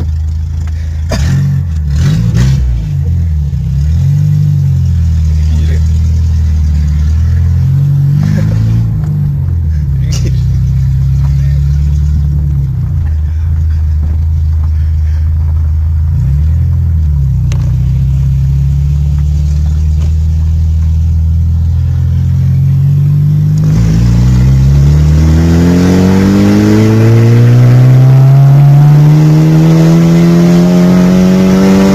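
Skoda Felicia 1.3 MPi four-cylinder petrol engine heard from inside the cabin, running at steady revs with small rises and dips, then accelerating hard with the revs climbing steadily over the last several seconds. A few knocks sound in the first few seconds.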